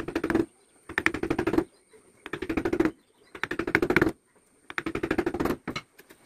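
Small wood-carving chisel being tapped rapidly into teak, cutting fine notches: five bursts of quick clicking taps, each under a second, about a second apart, with a brief extra burst near the end.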